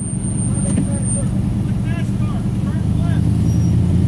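Pickup truck engine running steadily at low speed as the truck drives slowly round in a circle.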